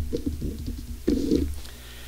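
A man's low closed-mouth hums, two short muffled "mm" murmurs, the second about a second in.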